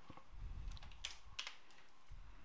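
A few faint computer keyboard keystrokes, separate clicks spread over about a second and a half, with a low rumble about half a second in.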